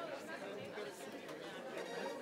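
Indistinct chatter of many people talking at once, a steady background murmur of voices with no single clear speaker.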